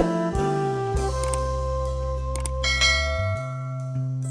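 Background music: held, bell-like notes that change every second or so over a steady low bass.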